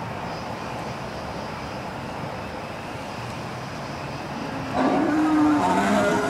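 Animatronic Tyrannosaurus rex roar from its speaker: a low, pitched bellow starting near the end, louder than the steady background noise before it.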